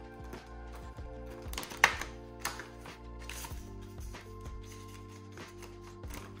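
Background music of sustained chords, with a few short clicks and rustles of banknotes and envelopes being handled, the sharpest about two seconds in.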